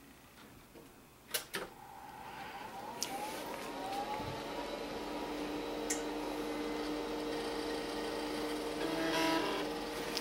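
A 1989 Acer 910 286 desktop PC powering up: two sharp clicks, then its hard drive spinning up with a rising whine that settles into a steady hum. A brief rapid chattering comes near the end as the machine starts its boot.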